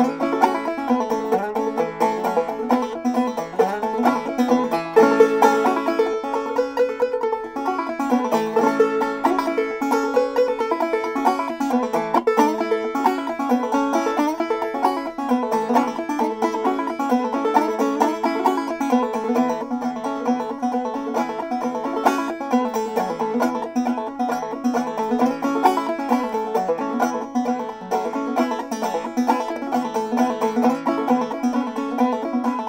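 Solo five-string banjo played clawhammer style: an old-time tune in a steady, unbroken stream of plucked and brushed notes.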